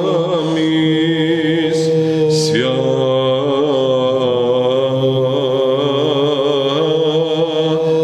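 Byzantine chant sung by men's voices: a melody moving above a steady held drone (the ison), the drone shifting to a new pitch about two and a half seconds in.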